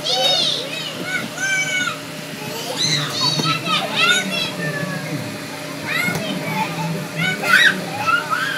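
Young children squealing and calling out as they play in an inflatable bounce house, many short high-pitched cries through the whole stretch, over a steady low hum.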